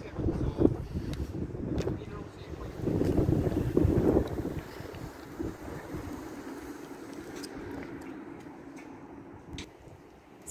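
Wind buffeting the phone's microphone in low rumbling gusts, strongest in the first second and again around three to four seconds in, over a faint steady hum.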